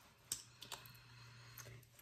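Near silence: faint room tone with a few small clicks, the first about a third of a second in and another past one and a half seconds.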